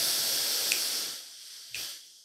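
A slow, deep breath in through the nose close to the microphone: a long breathy hiss that fades over the second half, with a faint click near the end.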